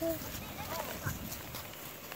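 Quiet background hiss with faint, brief voice sounds: a short one right at the start and a faint wavering one just under a second in.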